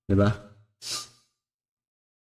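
A man's voice saying a short phrase, then a brief breathy exhale about a second in.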